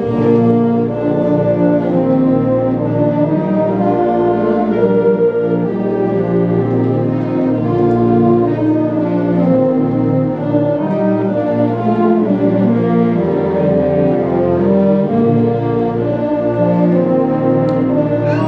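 High school symphonic band of woodwinds and brass playing the opening bars of a slow, lyrical ballad, with long held chords under a flowing melody.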